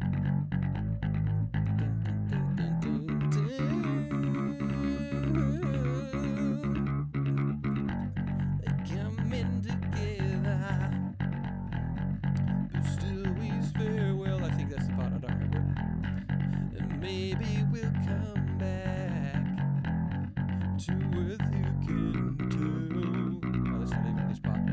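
Isolated electric bass guitar track, picked and quickly muted, with a chorus effect, playing a driving run of repeated low notes.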